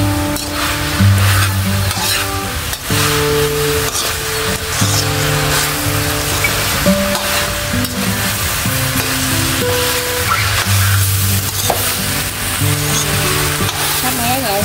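Fried cubes sizzling in sauce in an aluminium wok, stirred and scraped with a metal spoon, with scattered clicks of the spoon against the pan. Instrumental background music with slow, held notes plays underneath.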